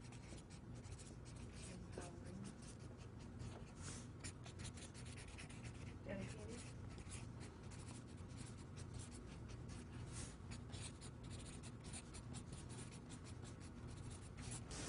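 Marker writing on a flip-chart pad: a faint, irregular run of quick scratchy strokes as words are written out.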